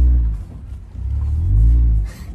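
Jeep driving with its top and doors off: a heavy engine and road rumble that drops away about half a second in and builds up again near the end.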